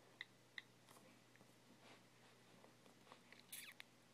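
Faint iPhone on-screen keyboard clicks: two short ticks about half a second apart as letters are typed. A brief soft scuffing sound comes near the end.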